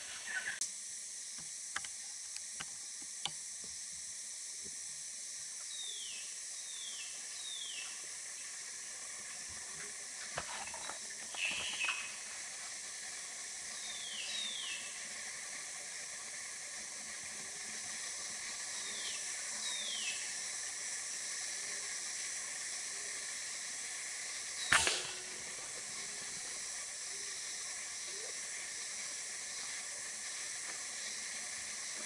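Steady high-pitched drone of a forest insect chorus, with a bird's short descending whistled notes in groups of two or three and a few small clicks and rustles. About 25 seconds in, one sharp crack, the loudest sound.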